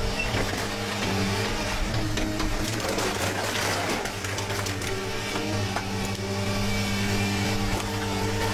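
Tracked excavator's diesel engine running under hydraulic load while its car-dismantling shear grips and tears apart a car body, with scattered sharp cracks of metal.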